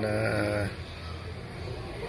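A man's drawn-out hesitation sound, one held "uhh" on a steady low pitch lasting well under a second, then faint room noise.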